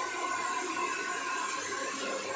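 Handheld hair dryer running steadily, blowing air through long hair, with a faint motor whine over the rush of air.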